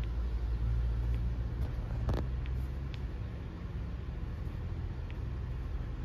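Steady low background rumble with a few faint clicks, one a little stronger about two seconds in.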